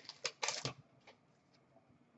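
Hockey trading cards being handled and flicked through by hand: a few faint, crisp clicks and rustles that stop within the first second.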